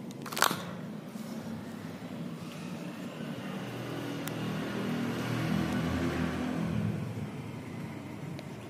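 A low motor hum that grows louder to a peak about six seconds in and then fades, after a sharp click about half a second in.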